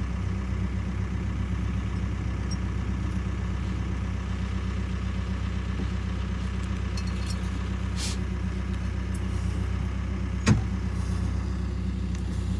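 An engine idling steadily, a low even hum, with a single sharp knock about ten and a half seconds in.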